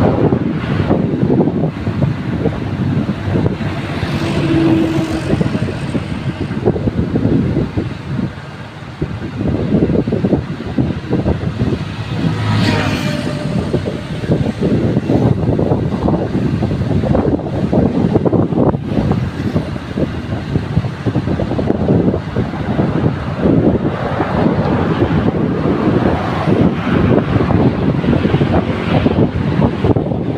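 Wind buffeting the microphone of a camera riding along a road, with road and traffic noise underneath. A short, sharper sound stands out about halfway through.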